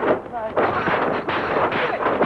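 Dubbed kung fu fight sound effects: a quick run of punch and block impacts, roughly two a second, with a short shout from a fighter.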